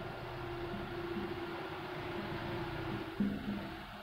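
Marker writing a word on a whiteboard, faint against a steady background hum, with a small knock about three seconds in.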